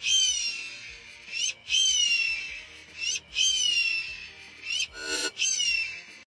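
A high, whistle-like call that sweeps up and then slides down, repeated four times about a second and a half apart, with a brief lower sound about five seconds in.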